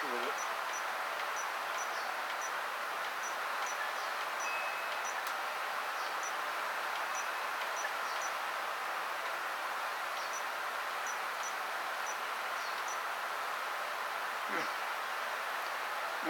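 Faint high insect chirps, about two a second in runs with pauses, over a steady hiss.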